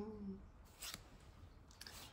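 Tarot cards sliding against each other as they are moved through the deck by hand: a brief, faint card rustle just under a second in and another near the end.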